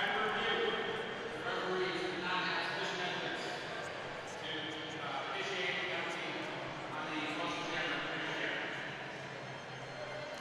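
Indistinct chatter of many voices in a large hall, quieter and more distant than close speech.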